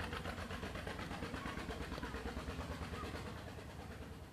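Faint engine running in the background, a low rumble with a fast, even pulse that fades away near the end.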